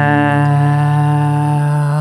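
A man's voice holds one long sung note over a ringing Taylor acoustic guitar chord. The note ends near the end, and a fresh guitar strum comes in.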